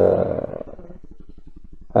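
A man's voice holding a drawn-out hesitation sound, trailing off about half a second in. After that, only a faint, low buzz with a fast, even pulse.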